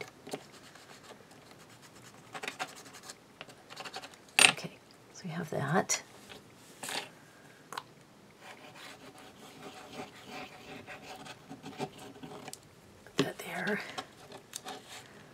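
Paper being rubbed, creased and pressed by hand as a glued cover is folded around a miniature book, with scattered soft clicks and a few louder scrapes.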